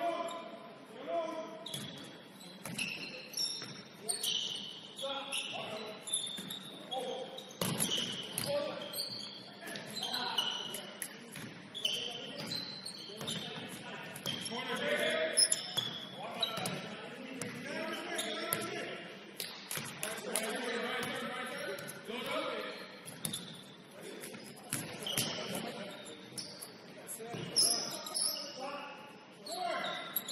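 Pickup basketball game on a hardwood gym floor: the ball bouncing, sneakers squeaking and players calling out, all echoing in the large hall.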